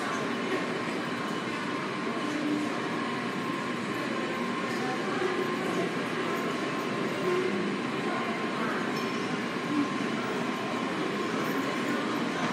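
Washington Metro train approaching through the tunnel into an underground station: a steady rumble, with a thin steady hum throughout.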